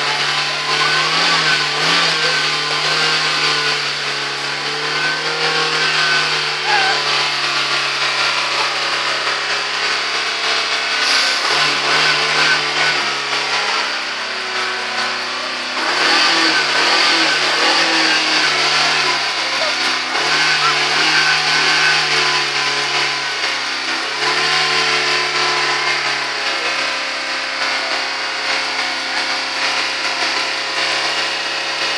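Hyundai Accent's four-cylinder engine running at raised revs while it burns off a Seafoam engine-cleaner treatment, blowing thick white exhaust smoke. The engine speed steps up and down a few times over a steady hiss.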